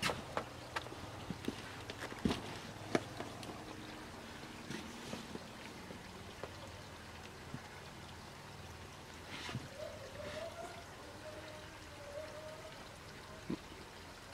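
A small stream trickling steadily, with a few light knocks and scuffs scattered through it.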